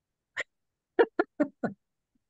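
A man laughing in short voiced bursts: a single one, then four quick ones in a row about a second in.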